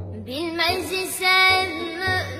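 A Turkish song about mother: a high sung voice enters about a third of a second in and holds a sliding, ornamented melodic line over the musical accompaniment.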